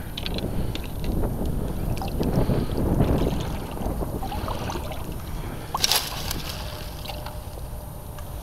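Footsteps wading and splashing through shallow creek water, with wind rumbling on the microphone. A brief crackle of dry leaves and twigs about six seconds in.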